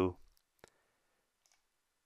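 A single computer mouse click a little over half a second in, against near-silent room tone.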